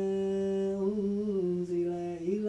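A man's voice chanting Quran recitation in melodic tajweed, holding one long drawn-out note that steps down in pitch about one and a half seconds in.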